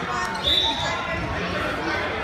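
A referee's whistle blown once, a short high blast about half a second in, starting the wrestling bout, over background crowd chatter.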